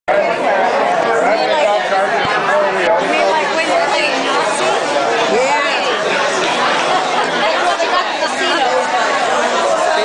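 Indistinct chatter of many guests talking at once in a large banquet room, a steady hubbub of overlapping conversation.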